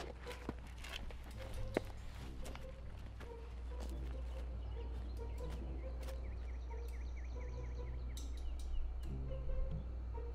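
Outdoor ambience: a low steady hum with scattered clicks, and a small bird giving a quick series of short repeated chirps for a few seconds in the second half.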